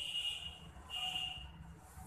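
Steel ruler sliding over a textbook's paper page, giving two high, drawn-out squeaks of about half a second each, the second about a second in.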